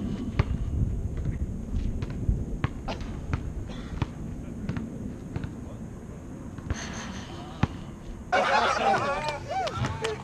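Basketball bouncing and slapping on an outdoor asphalt court: scattered sharp thuds at uneven intervals, over a steady rumble of wind on the microphone. Voices call out near the end.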